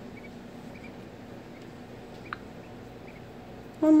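A hatching duckling gives one short, high peep about two seconds in, with a few fainter peeps, over a steady low background hum.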